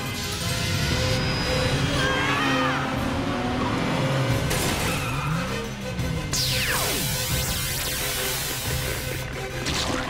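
Cartoon action soundtrack: a music bed under chase sound effects. About six seconds in, a laser zap falls in pitch, and a crashing blast of the beam hitting a brick wall runs for about three seconds before it stops.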